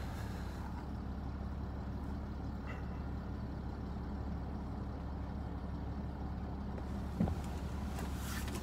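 Jaguar XF's 3.0-litre V6 turbodiesel engine idling steadily, heard from inside the cabin as a low, even hum. A brief low knock about seven seconds in.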